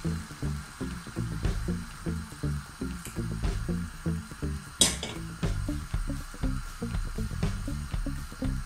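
Background music with a steady, repeating bass beat. A single sharp clink sounds about five seconds in.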